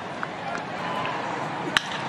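Steady stadium crowd noise, then a single sharp crack of a wooden bat hitting a 100 mph pitch near the end, the contact that sends a ground ball to second base.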